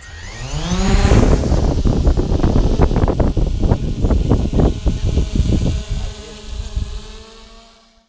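Small quadcopter drone taking off right beside the microphone: its motors whine up in pitch over the first second, then the propeller wash buffets the microphone with loud gusty rumbling for several seconds, fading as the drone climbs away.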